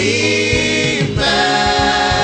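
Gospel worship choir singing slow, long-held notes, a new chord taking over about a second in.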